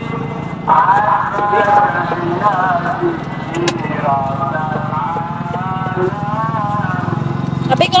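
People talking over a steady low hum, with one sharp click about three and a half seconds in.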